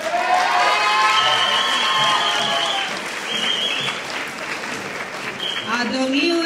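Audience applauding, with cheering over the first few seconds.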